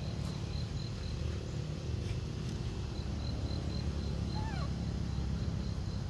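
An insect, cricket-like, chirps steadily at a high pitch, about four pulses a second, over a constant low outdoor rumble. About four and a half seconds in, a single short squeak with a falling pitch.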